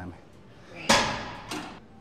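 Weight stack of a seated chest press machine clanking down once the set ends: one loud metal clank about a second in, with a smaller knock just after.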